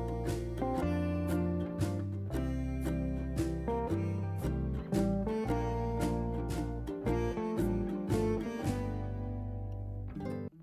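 Background music led by a strummed acoustic guitar over low bass notes.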